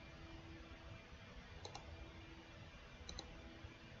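Computer mouse clicking twice, about a second and a half apart, each time a quick double click, over a faint steady hum.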